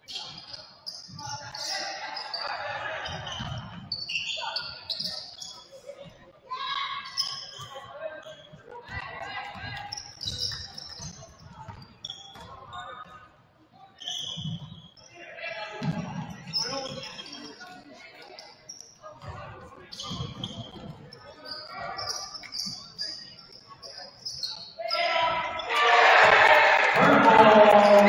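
Basketball game play on a hardwood gym floor: a ball dribbling and bouncing, sneakers squeaking in short high chirps, and players and coaches calling out, with a loud swell of crowd voices near the end.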